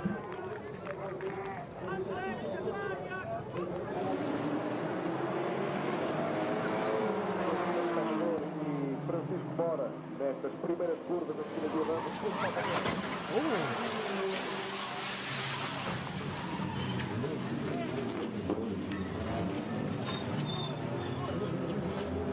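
Race commentary voices over motor-racing sound, with a stretch of race-car engine noise a little past the middle.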